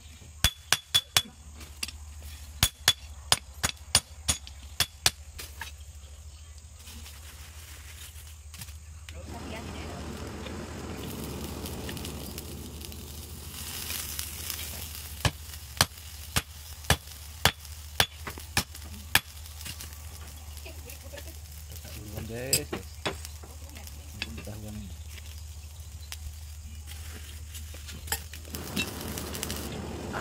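Hand-hammer blows on a red-hot steel golok blank lying on a large steel gear used as an anvil, about two ringing strikes a second. One run of about a dozen strikes comes at the start and another runs from about 15 to 19 seconds in. A steady low hum and hiss from the forge runs underneath.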